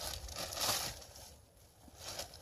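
Plastic flatbread package rustling and crinkling as it is handled and opened, mostly in the first second, then quiet.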